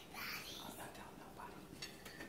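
Faint whispering, with a short click of cutlery on a plate near the end.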